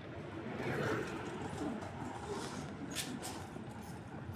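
A bird calling in low, soft notes over a steady street background hum, with two short sharp clicks about three seconds in.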